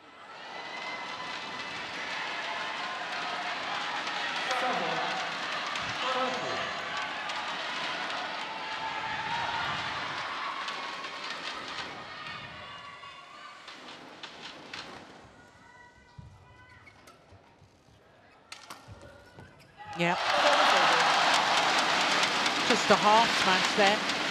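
Indoor badminton arena crowd: cheering and noise that dies down over the first half, a quieter stretch with a few sharp racket hits on the shuttlecock, then a sudden loud cheer about 20 seconds in as the home player wins the point.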